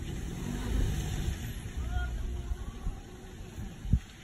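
Ford Ranger Raptor pickup's engine running with a low, steady rumble as the truck is towed out of slippery mud, with faint voices and a short low thump near the end.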